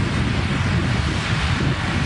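Wind blowing across the microphone, a steady rush with a heavy low rumble.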